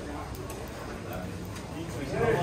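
Indistinct voices of people talking in the background over steady street bustle.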